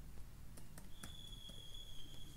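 A few faint computer-keyboard keystrokes as a short password is typed. About a second in, a steady high-pitched electronic tone starts and holds.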